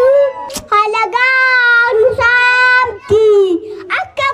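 A young boy singing into a handheld microphone, in long held notes with short breaks between phrases.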